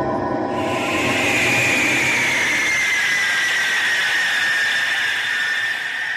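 MiG-31 interceptor's jet engines running on the ground: a high whine over a steady rush, coming in about half a second in and sinking slowly in pitch.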